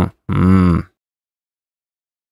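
A man's short grunt, about half a second long, just after the start.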